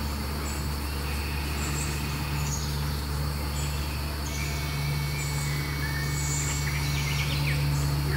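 Outdoor woodland ambience: birds and insects chirping in short, high, repeated calls, with a few thin held tones, over a steady low hum.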